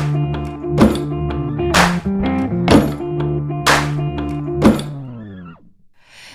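Background music with a heavy beat, one strong hit about every second; near the end the whole track slides down in pitch and fades out.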